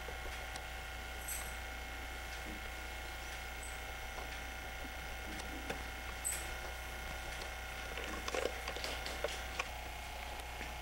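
Steady hum and whine from a home camcorder's own tape mechanism, with a few faint ticks and rustles near the end.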